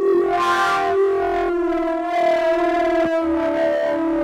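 Electronic wind instrument playing a synthesized tone in duophonic mode: two notes held together as a double stop, gliding to a new pair of notes about one and a half seconds in, with a short click just after three seconds.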